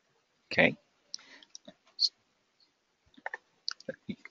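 Scattered short computer clicks from a mouse and keyboard being worked, with one louder brief burst of voice or breath about half a second in.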